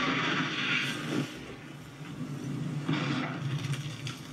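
Film sound effect of a dragon breathing fire: a rushing, roaring burst near the start and another about three seconds in.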